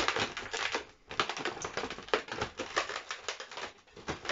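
Latex modelling balloons being twisted and handled: a rapid, irregular run of small creaks and crackles as the rubber rubs and twists against itself.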